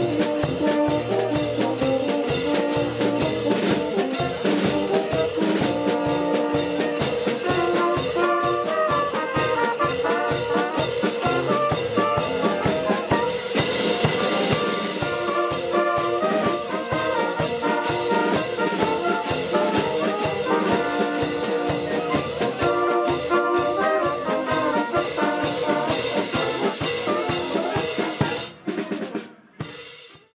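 Brass band of trumpets, flugelhorns and horns playing over a steady bass-drum-and-cymbal beat. The music fades out near the end.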